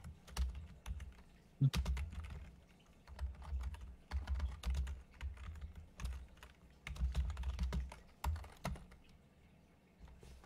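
Typing on a computer keyboard: irregular clusters of key clicks with soft thuds, picked up by an open microphone.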